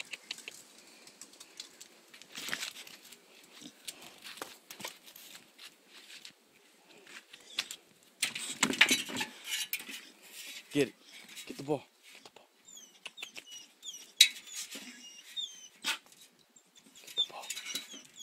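Scattered knocks, scuffs and clatter as a young pit bull scrambles against plastic patio chairs and a glass table, with a louder burst of scuffling in the middle. Short high chirps come in a few times in the second half.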